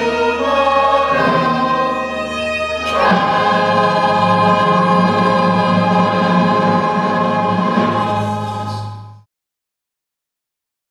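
A musical-theatre ensemble sings a sustained choral chord with accompaniment. A new, louder chord comes in about three seconds in and is held, and the music cuts off abruptly about nine seconds in.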